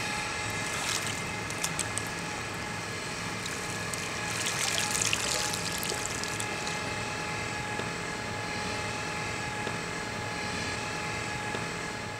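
Water sounds at a swimming pool under a steady hum. About four to five seconds in, a brief swell of splashing comes as a pool skimmer net is drawn through the water.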